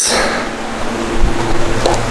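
Rushing wind noise from an electric fan blowing on the microphone, with a faint steady hum joining about halfway.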